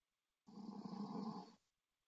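A short, raspy vocal noise from a person, lasting about a second.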